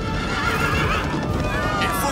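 Several horses whinnying, their cries overlapping, over the clatter of hooves, with background music.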